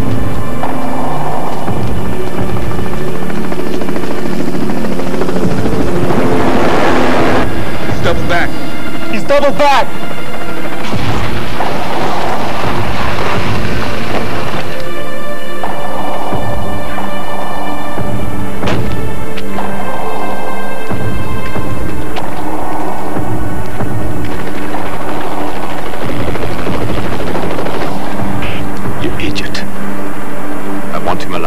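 Film soundtrack of an action scene: a music score with held tones over helicopter noise, with a few sharp hits and a wavering tone about eight to ten seconds in.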